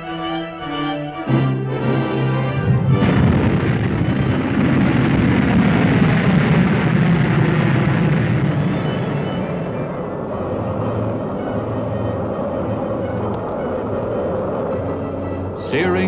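Orchestral film score, over which, about two and a half seconds in, the rushing noise of a Corporal missile's liquid-fuel rocket motor at lift-off breaks in. It is loudest for several seconds and then slowly fades as the missile climbs away.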